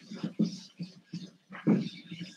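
Whiteboard eraser rubbed hard back and forth across a whiteboard, a quick irregular run of scrubbing strokes several times a second, with one louder stroke near the end.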